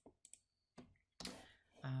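A few faint clicks at a computer during a pause in work on the screen, followed about a second later by a short breathy noise.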